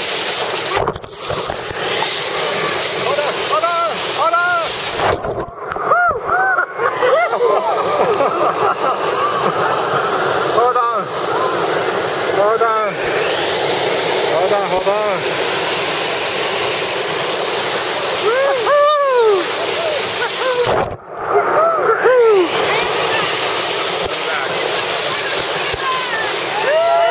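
River rapids rushing and splashing around a raft, with people whooping and yelling over the water several times. The sound goes briefly muffled three times, about a second in, for a couple of seconds from about five seconds, and near twenty-one seconds, as water washes over the microphone.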